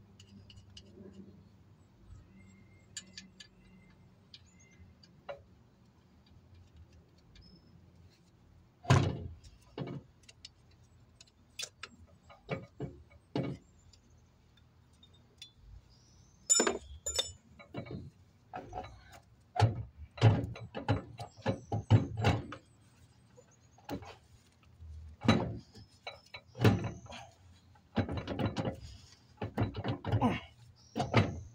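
Irregular metal knocks and clunks as the heavy cast differential carrier, the replacement with 4.10 gears, is rocked and pushed by hand into the axle housing. The first strong knock comes about nine seconds in, then many more at uneven spacing, with a few short high squeaks among them.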